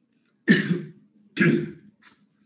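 A person coughs twice, about a second apart, in short throat-clearing coughs.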